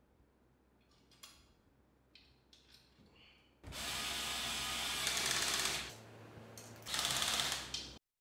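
Cordless drill-driver driving a bolt into a motor's mounting bracket: a few faint clicks first, then one run of about two seconds, a short pause, and a second, shorter run near the end.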